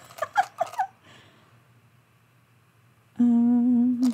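A woman's voice humming: a few short gliding hums in the first second, a quiet pause, then a single steady held hummed note starting about three seconds in.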